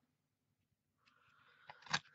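A plastic paper border punch pressed down through cardstock: a soft paper rustle builds from about halfway through, then a sharp click near the end. The first half is nearly silent.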